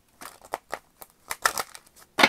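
A deck of large tarot-style cards being shuffled by hand: a quick, irregular run of short, crisp snaps and slides as packets of cards are pushed into one another.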